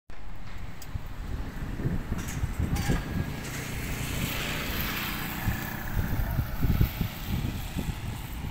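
A road vehicle passing, its tyre and engine noise swelling to a peak about midway and fading again, with wind buffeting the microphone.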